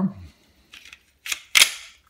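Glock pistol slide being fitted back onto its polymer frame by hand: a few sharp plastic-and-metal clicks and a short scrape, the loudest about a second and a half in.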